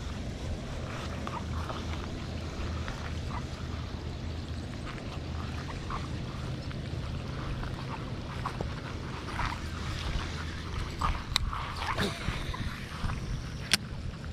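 Steady rain falling on a pond and the grass around it, with scattered faint ticks. Near the end come two sharp clicks.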